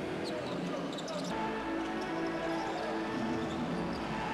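Basketball game sound on a hardwood court: the ball bouncing, with music of sustained notes coming in about a second in.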